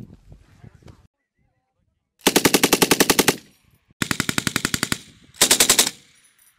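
Belt-fed machine gun firing three bursts of rapid shots: a burst of just over a second, a slightly shorter one, then a short half-second burst near the end.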